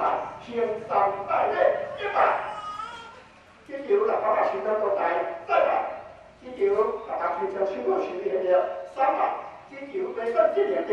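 A voice intoning a prayer in short, evenly pitched phrases, with two brief pauses.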